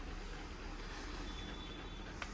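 Faint, steady low background rumble with a light hiss, with a faint thin high tone for about half a second in the second half.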